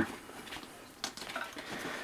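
Faint handling noise as climbing sticks are unstrapped from a hunting pack: light rustling with a few small clicks and knocks, the clearest about a second in.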